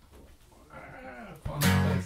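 Acoustic guitar strumming: a loud chord is struck about one and a half seconds in, after a quiet moment with a faint, brief wavering sound.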